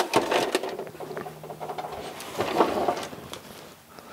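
A hard plastic toy karaoke machine being pushed and slid across a cutting mat: a few sharp knocks at the start, then scraping and rustling with scattered clicks, fading near the end.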